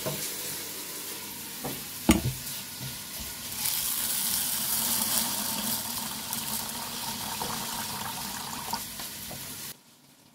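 Tap water running into a metal bowl of rice in a stainless steel sink as the rice is rinsed. The water hiss grows louder about a third of the way in and cuts off suddenly just before the end. There is a sharp knock about two seconds in.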